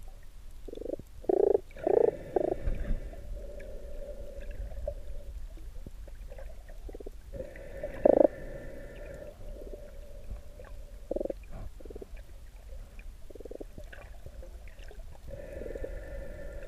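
Scuba regulator breathing heard underwater: a drawn breath through the regulator about every six seconds, three times, each followed by a low bubbling rumble of exhaled air.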